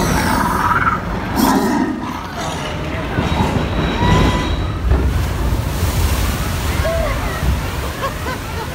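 Water sloshing and a steady low rumble as a theme-park ride boat moves along its flume channel, with indistinct voices mixed in.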